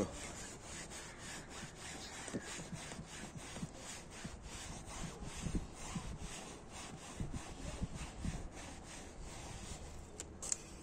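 Microfibre cloth rubbing back and forth over a car's rear door opening trim and seat edge, in quick repeated strokes, a few a second.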